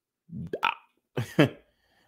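Two short vocal sounds from a man, the first about a third of a second in and the second just past a second.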